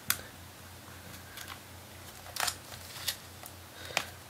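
Plastic pry tool clicking and scraping against a MacBook Pro's logic board and battery connector as the connector is worked loose: about five small, separate clicks over a faint steady low hum.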